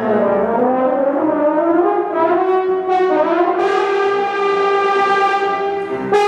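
French horn playing a slow rising line that settles into a long held note, which grows brighter about halfway through.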